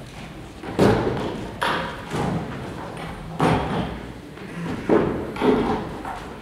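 Thuds and knocks of chairs being handled and set down on a wooden stage floor, about six irregular impacts, echoing in a large hall.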